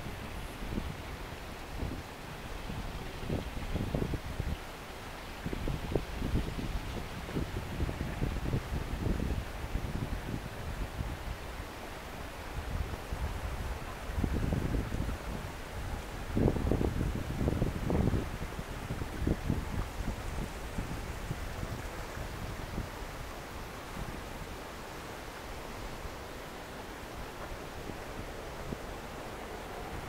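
Wind rumbling on the microphone in irregular low gusts over a faint steady hiss, strongest a little past halfway.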